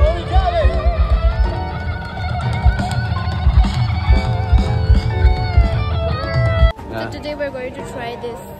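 Live band music through a festival PA: a heavy thumping bass beat, electric guitar and a singing voice. It cuts off suddenly near the end, giving way to quieter crowd chatter.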